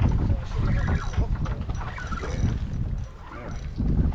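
Wind rumbling on the microphone out on the water, with faint voices in the background.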